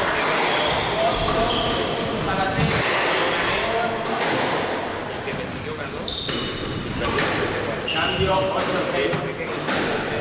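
Squash ball smacking off the court walls and wooden floor in a rally, with short sneaker squeaks on the court floor.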